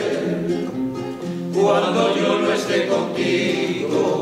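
Male vocal group singing a bolero in harmony with sustained notes, accompanied by two strummed acoustic guitars.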